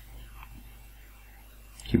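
A man's voice: a pause with faint whispered muttering over a low steady hum, then he starts speaking again just before the end.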